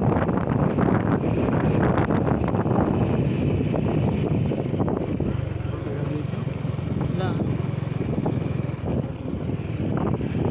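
Motorcycle engine running steadily while riding, mixed with wind rushing over the microphone.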